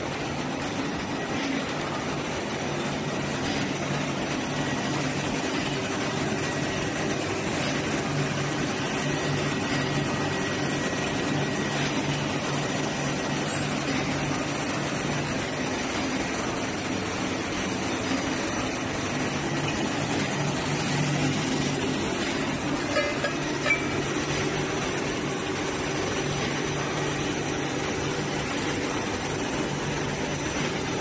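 A four-color printing machine for nonwoven and plastic film running steadily, its rollers feeding printed film: an even mechanical drone with a low hum and a faint high whine. A few light clicks come about three-quarters of the way through.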